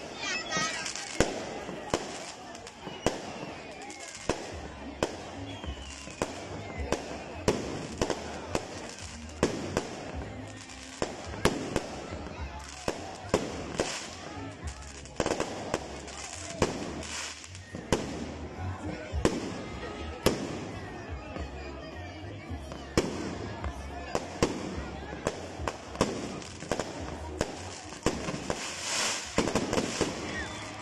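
Aerial fireworks display: shells bursting overhead in a steady run of sharp bangs, about one a second, with crackling in between.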